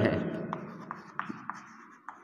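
Chalk writing on a blackboard: a few short taps and scratches as letters are written.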